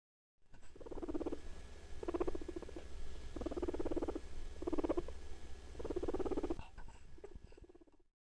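Guinea pig purring in five pulsing bursts, each under a second long and about a second apart, over a low hum.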